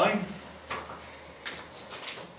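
A man's spoken word trailing off, then two faint short knocks about a second apart.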